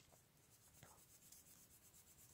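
Near silence, with a faint rubbing of a foam ink blending brush being worked lightly over the edge of a paper sentiment panel.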